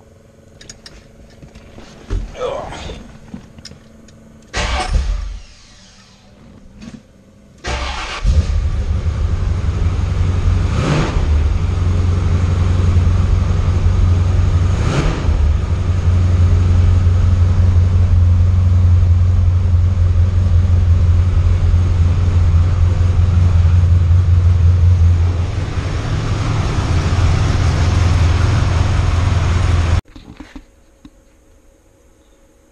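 The 1980 Corvette's 383 stroker V8 starts just before eight seconds in and then runs with a strong, steady low rumble. The engine is blipped twice, briefly, about three and seven seconds after it catches.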